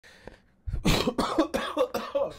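A man with COVID in a coughing fit: several coughs in quick succession, starting a little under a second in.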